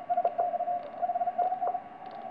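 Morse code (CW) from the C5DL station received on a Yaesu FT-991 transceiver on the 15 m band: a single steady-pitched beep keyed on and off in dots and dashes over faint band hiss. The tone stands out cleanly because the radio's audio peak filter (APF) is switched on, narrowing the receive audio around this one signal.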